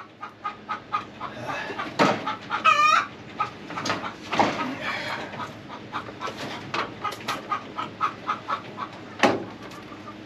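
Chickens clucking on and off throughout, with a brief wavering call just before three seconds in. A few sharp knocks, about 2, 4 and 9 seconds in, come from a metal roofing panel and tools being handled on sawhorses.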